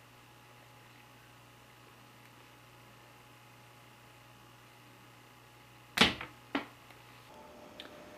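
Faint steady low hum, then two sharp knocks about half a second apart near the end.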